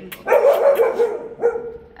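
A dog barking: one drawn-out call, then a shorter one about a second and a half in.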